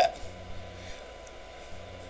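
Quiet room tone with a steady low hum and a faint thin steady tone, right after the last syllable of a spoken word.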